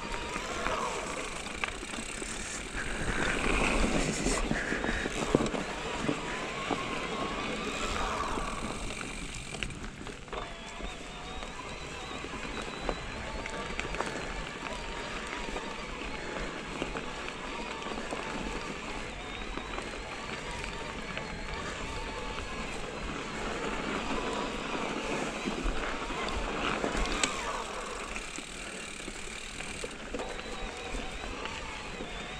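Mountain bike riding over a dirt singletrack: a steady rush of tyre, wind and bike rattle, with louder, bumpier stretches a few seconds in and near the end.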